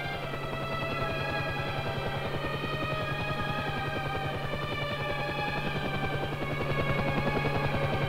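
Newsreel soundtrack music: sustained chords over a fast, steady low pulse.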